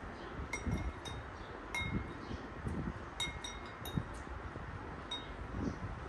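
Metal spoon and fork clinking against each other and the dishes while eating: a series of sharp clicks with a short ringing tone, several in quick succession about three seconds in, with soft chewing sounds between.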